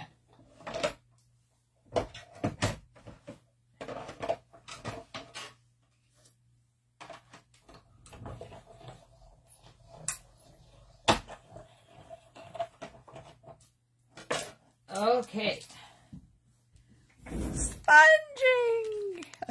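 Scattered clicks and knocks of metal dies and cutting plates being handled and run through a manual die-cutting machine.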